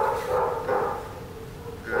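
A dog barking, three short barks in quick succession in the first second, then a pause.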